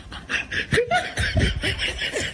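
A person snickering and laughing, a quick run of repeated breathy laughs.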